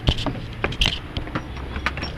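A string of knocks and clatter from someone moving hurriedly about inside a camper, with a low steady hum underneath.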